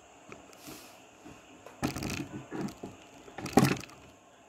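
Handling noise: a few irregular knocks and rustles, the loudest about three and a half seconds in, over a faint steady hiss.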